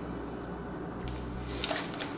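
Wet, sticky bread dough being wiped off a spoon by fingers in a glass bowl: soft squishing over a steady low hum, with a brief rustle near the end.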